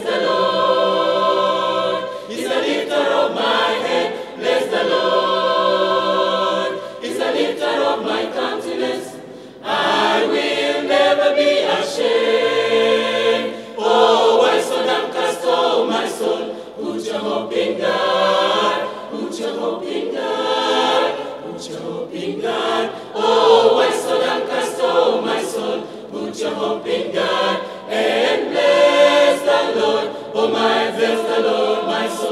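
Mixed choir of men's and women's voices singing a church hymn together in harmony.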